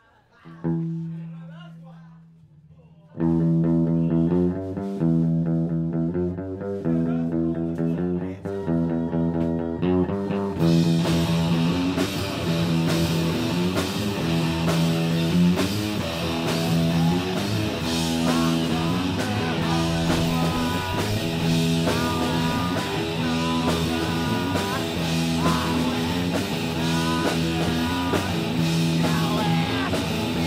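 Live rock band starting a cover song: one low note rings out and fades, then a guitar and bass riff comes in at about three seconds. Drums and cymbals join about ten seconds in, and the band plays on at full volume.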